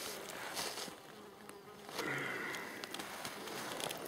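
Flies buzzing faintly around close by, mostly in the second half, with a few light clicks.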